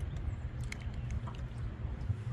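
A few faint clicks and small handling noises as a crappie is unhooked in a landing net, over a steady low rumble.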